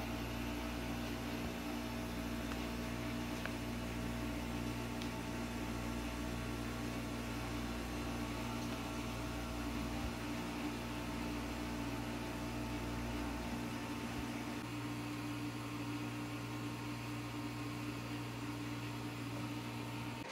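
Steady background hum of running room equipment: a few steady low tones over a faint hiss. The deepest part of the hum drops away about two-thirds of the way through.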